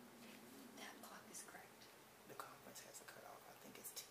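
Near silence in a small room, with faint whispered voices and small soft clicks.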